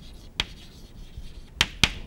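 Chalk writing on a chalkboard: sharp taps of the chalk against the board, one about half a second in and two close together near the end, over faint scratching strokes.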